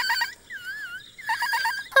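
Squeaky high-pitched chirping voice of a small fluffy puppet creature: a few quick chirps, a wavering warble in the middle, then a rapid run of short chirps near the end.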